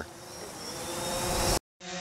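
DJI Phantom 4 Pro quadcopter's propellers whirring with a faint whine, growing steadily louder, then cut off abruptly about one and a half seconds in.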